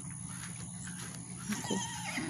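A horse whinnying briefly near the end, a short wavering call, calling out ahead of its evening feed.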